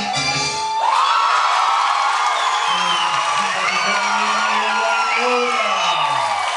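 Salsa music ends about a second in and a crowd breaks into loud cheering, with high whoops and shouts and one long low shout that falls in pitch near the end.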